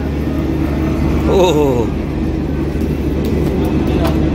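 A steady low rumble of road traffic, with a man's voice briefly about a second in.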